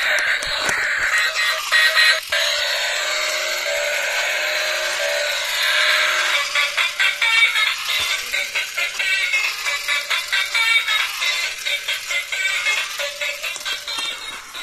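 Electronic toy music and sound effects from the built-in speaker of a light-up RC stunt car, with nothing in the bass. It turns choppy and rhythmic about halfway through.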